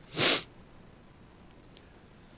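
A man's short, sharp breath drawn in through the nose into a handheld microphone, heard once near the start.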